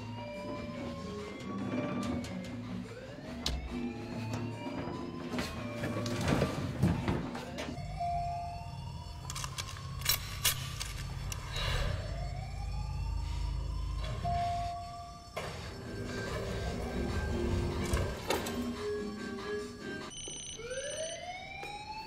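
Film soundtrack: a siren-like wail that rises in pitch and levels off, repeating about every two and a half to three seconds, over sustained low music with occasional sharp hits.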